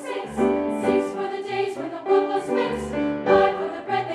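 Women's choir singing a gospel spiritual in full voice, several parts moving together, with a deep note sounding briefly twice underneath.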